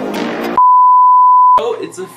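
Background music cuts off, then one loud, steady electronic beep at a single pitch lasting about a second, in the manner of a censor bleep. A man's voice begins right after it, near the end.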